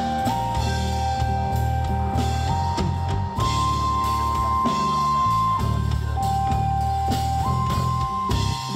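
Live electronic jazz-rock from a keyboard, electric bass and drum kit trio: a synthesizer lead holds long notes, stepping up and down between them, over a busy bass line and drums.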